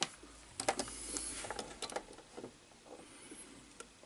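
Faint handling noise of test leads being connected to a transistor on a circuit board: a few light clicks and rustles in the first two seconds, then quieter.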